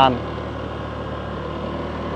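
Motorbike engine running steadily at low speed: a low, even hum with no change in pitch.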